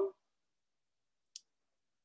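Near silence, broken by a single short, faint, high-pitched click about a second and a half in.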